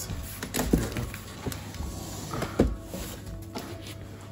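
Background music playing over the knocks and scraping of a large cardboard box being handled and tipped on a tiled floor, with two louder thumps, one just under a second in and one past halfway.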